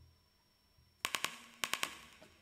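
Quiet stage with a faint low hum, then about a second in a live indie rock band starts a song with sharp, clipped hits in quick groups of three.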